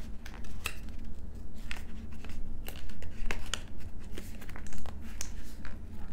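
Foundation packaging being handled and worked open by hand: irregular crinkling and rustling with many small clicks.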